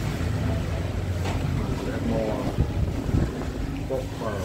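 Steady low rumble of background noise, with a person's voice talking briefly in the second half.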